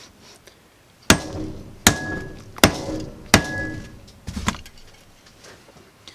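Hammer blows on a woofer's metal basket and magnet assembly, trying to knock the glued magnet off: four hard strikes about three quarters of a second apart, each ringing briefly with a metallic tone, then two lighter knocks.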